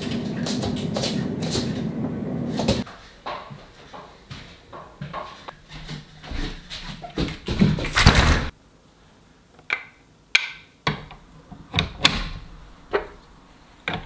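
Knocks and clatter of a Creality CR-10 Max 3D printer's metal frame being handled and set down on a workbench, with the loudest, heavy clunk about eight seconds in and sharp scattered clicks after it. A dense steady noise before that stops suddenly about three seconds in.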